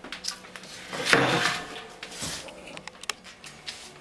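Adhesive tape and a paper template being handled as the template is taped onto a stainless steel brew kettle: a short rasp of tape about a second in, then rustling and a few light clicks near the end.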